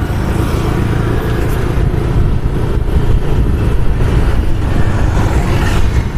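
Loud, steady rumble of wind buffeting the microphone, mixed with a motorcycle's engine and road noise while riding along a road.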